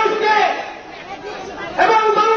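A man speaking Bengali into a handheld microphone, amplified and loud, with crowd chatter beneath. His voice breaks off after about half a second and comes back near the end.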